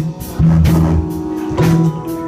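Live band playing an instrumental passage of a slow soul song: electric bass and keyboard notes with drum hits, and no singing.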